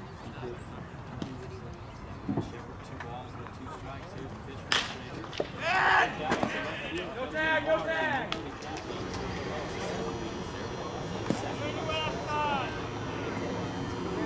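Ballfield sound between pitches: players' voices calling out, loudest about six to eight seconds in and again briefly near twelve seconds, over a steady background hum. A single sharp smack comes just before five seconds in.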